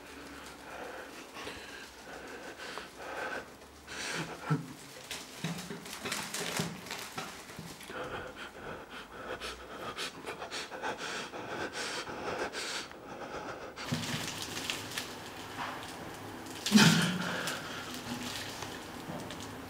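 A person breathing heavily and unevenly in short panting breaths, with a louder burst about a second before the end.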